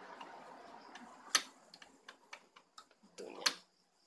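Scattered sharp plastic clicks and taps, about seven in all, the two loudest about a second and a half in and near the end, as fingers press a replacement encoder disc onto the paper-feed gear of a Canon iP2770 inkjet printer. A short scrape sits around the last loud click.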